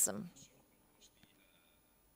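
A man's voice trailing off at the end of a sentence, then near silence: the quiet room tone of a lecture microphone.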